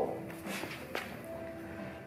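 Faint rolling of an electric scooter's front wheel on a concrete floor, with a couple of light clicks. It is being rolled to check that the freshly adjusted disc brake pad does not scrape the disc.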